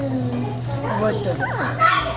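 A young child's voice making a few short sounds that rise and fall in pitch in the second half, over a steady low hum.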